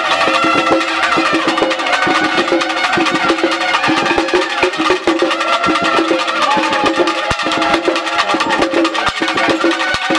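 Street band of trumpets and drums playing: the trumpets carry a wavering melody over a steady held note, above fast, continuous drumming.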